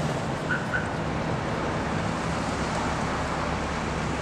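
Steady street traffic noise: a continuous rush of passing cars, with two short high chirps about half a second in.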